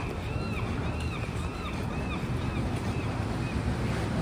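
Wet-street ambience: a steady hiss and rumble of traffic on rain-soaked pavement, with wind on the microphone. Over it a high chirping tone repeats about twice a second and stops near the end.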